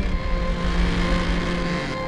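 A car's engine and spinning tyres during a smoky burnout donut: a loud deep rumble with a rushing noise on top, under orchestral string music.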